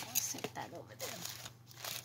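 Paper and tissue paper rustling and crinkling as hands move envelopes and a tissue-wrapped package, under a woman's soft, indistinct speech.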